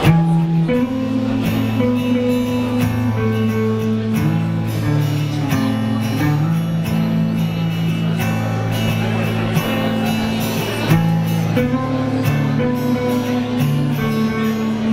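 Live rock band playing the instrumental opening of a sad song: strummed acoustic guitar and electric guitar over drums, beginning abruptly at the start.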